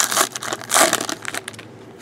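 Foil wrapper of a 2014-15 Panini Select basketball card pack crinkling as it is ripped open by hand, in two loud bursts within the first second and a half, then going quiet.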